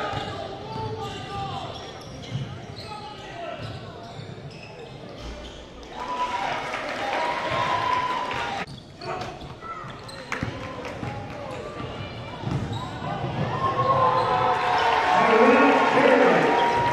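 Live game sound from a basketball gym: a basketball dribbled on the hardwood court, with players' and spectators' voices echoing in the hall. The voices grow louder about six seconds in and again near the end.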